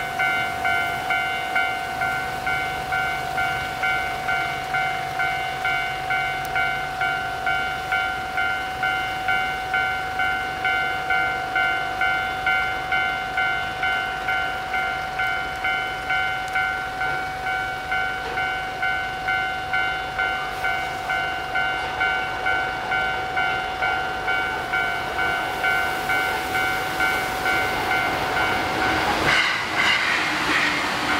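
A steady electronic alarm tone of fixed pitch, pulsing about twice a second throughout, with a rush of noise about a second before the end.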